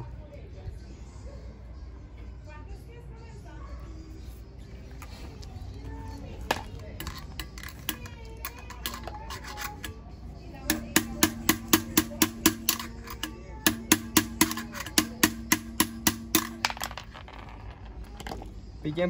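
Rapid, even hammer blows, about three a second, on a steel rod driving the bushing out of a BMX rear hub, with the metal ringing between strikes and a brief pause midway. Before them there are quieter handling sounds and a single knock.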